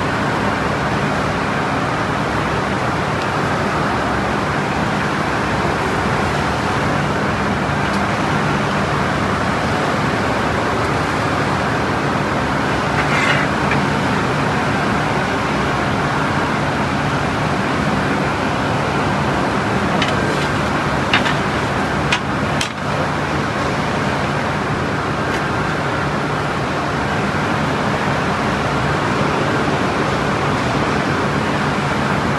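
A steady, loud mechanical rumble with a low hum under it, with a few short sharp clicks a little past the middle.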